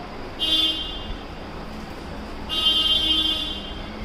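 Two honks from a vehicle horn: a short one about half a second in, then a longer one lasting about a second, over a steady low hum.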